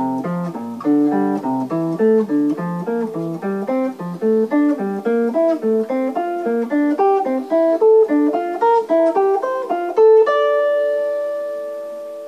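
Clean hollow-body electric jazz guitar playing a steady line of single plucked notes: the F major scale in diatonic first-inversion triads, each triad picked one note at a time. About ten seconds in it lands on a last note that rings out and fades.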